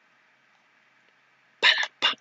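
Near silence with a faint steady hiss, then a man's voice starts near the end.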